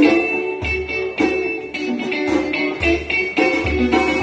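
Live band playing an instrumental passage, with electric guitar to the fore over a steady beat and repeated low bass hits.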